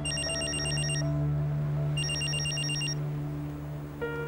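Mobile phone ringing for an incoming call: two bursts of rapid electronic trilling, each about a second long, a second apart.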